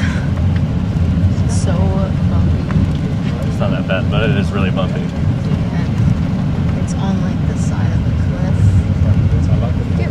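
Bus engine and road rumble heard from inside the passenger cabin: a loud, steady low rumble with a voice talking over it in places.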